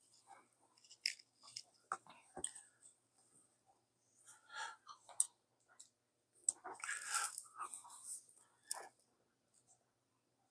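Faint scattered clicks and rustles of a power bank's built-in USB-C cable being handled and plugged into a tablet's charging port, busiest a little past the middle.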